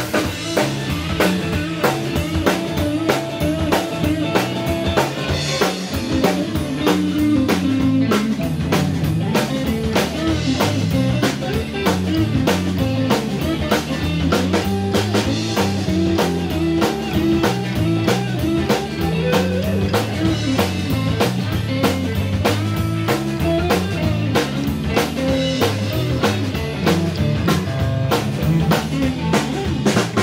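Live rock-and-roll band playing an instrumental break with no vocals: electric guitar taking the lead over electric bass and a drum kit keeping a steady, fast beat.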